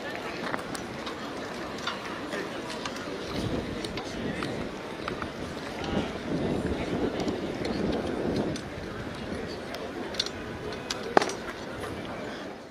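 Distant voices of a police parade contingent shouting a cheer together, mixed with outdoor noise and growing louder for a couple of seconds past the middle. A single sharp knock comes near the end.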